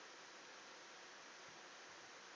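Near silence: faint steady microphone hiss.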